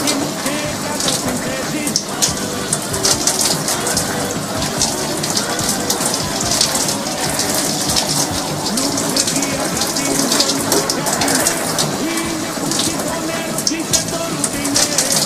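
A shower running: water spraying steadily from the showerhead and splattering down into the tub.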